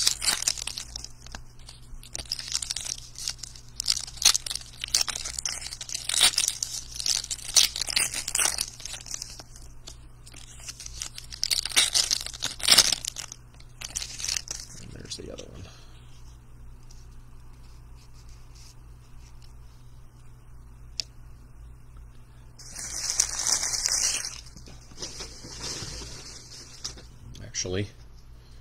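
Foil trading-card pack wrappers being torn open and crinkled by hand, in bursts of crackly rustling and tearing with a quieter stretch in the middle and another burst near the end. A steady low hum runs underneath.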